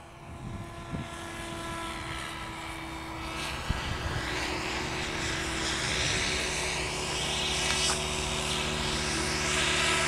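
A propeller aircraft engine droning steadily, gradually growing louder, with a sharp tick about four seconds in.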